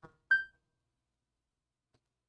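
A faint click, then a single short, high electronic chime that fades quickly, like a computer notification sound.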